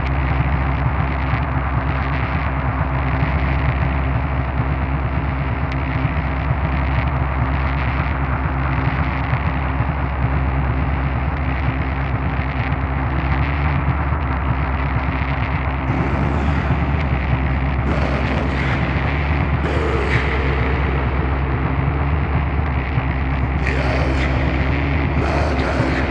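Live industrial noise music: a dense, distorted drone with a heavy low end, held steady throughout. From about two-thirds of the way in, short bursts of harsh, bright noise cut across it.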